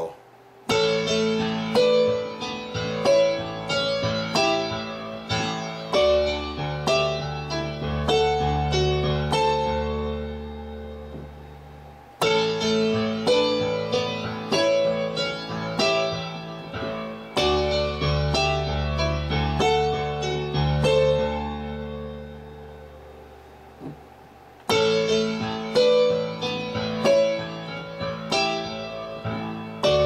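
Digital keyboard's piano voice playing a slow figure: right-hand sixths, each dropping to a single note under the thumb, over low bass notes. The phrase breaks off and starts over about twelve seconds in, and again near the end.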